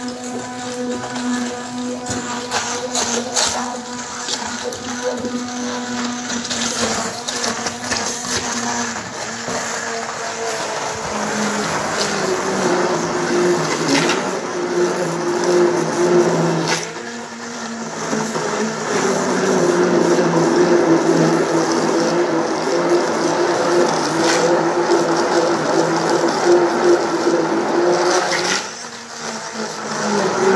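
Electric immersion blender running in a steel bowl, pureeing roasted tomatoes into sauce: a steady motor hum that changes pitch about twelve seconds in as the load shifts, and briefly drops twice, once just past halfway and once near the end.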